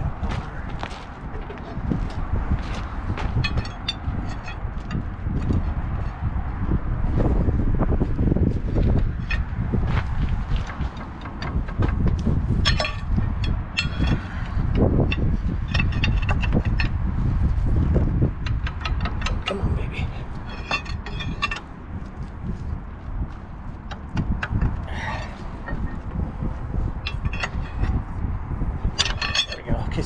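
Steel axle shaft and pry bar clinking against the wheel's planetary hub as the shaft's splines are worked into the gears, in scattered sharp metallic clicks and taps over a steady low rumble.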